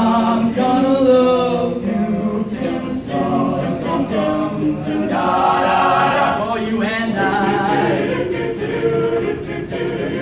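Male a cappella group singing in harmony, a lead voice on a microphone over the group's vocal backing, with no instruments.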